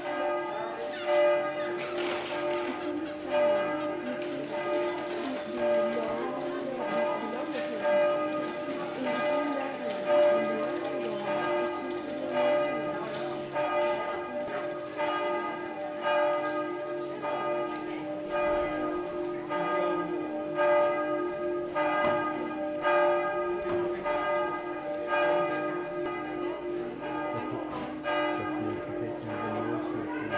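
Church bells ringing, struck over and over about once a second, their tones sounding on between strikes.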